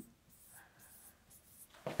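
Faint strokes of a stylus on an interactive whiteboard screen as figures are written.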